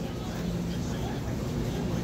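A steady low hum over an even rush of background noise, from a running machine.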